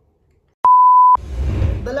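A single electronic bleep: one steady pure tone about half a second long that cuts in and out abruptly, with a click at each end. It is followed by a low rumbling noise, and a man's voice starts near the end.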